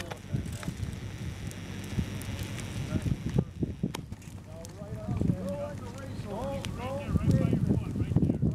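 Dry grass burning in a low-intensity prescribed burn: a hiss with a few sharp crackles, over wind rumbling on the microphone. Crew members talk indistinctly in the second half.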